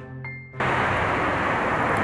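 Background music ends abruptly about half a second in, cut off by steady outdoor noise of road traffic.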